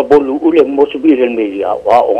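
Speech only: a man talking without pause.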